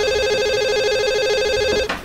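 Telephone ringing: one continuous electronic trilling ring, about two seconds long, that cuts off suddenly near the end as the call is picked up.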